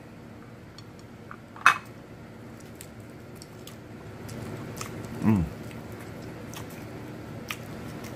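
Close-up mouth sounds of eating saucy chicken wings: small wet clicks and smacks of biting and chewing, with one sharp click about two seconds in. A hummed "hmm" comes a little past the middle.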